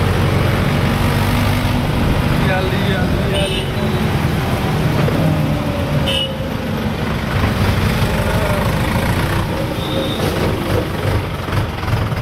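Tractor engine running steadily while driving along a road, with two brief high toots about three and a half and six seconds in.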